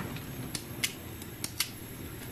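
Knife cutting through pieces of peeled raw tapioca (cassava) held in the hand, giving a few short, sharp clicks.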